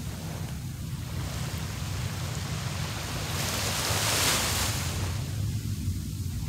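Small waves breaking and washing up a sandy beach, the hiss of one wash swelling to its loudest about four seconds in and then fading. Wind rumbles steadily on the microphone underneath.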